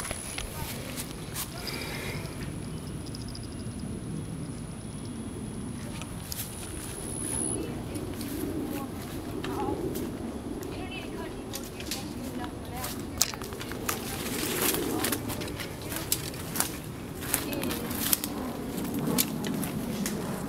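Footsteps crunching along a woodland dirt trail strewn with pine needles and twigs, with indistinct voices in the background. A thin, high, steady whine runs through the first third and cuts off suddenly.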